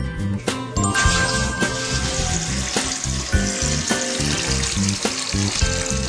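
Background music with a steady beat, joined about a second in by the hiss of water pouring into a bath.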